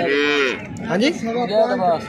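A cow mooing once, a short call of about half a second at the start, followed by a man's brief reply.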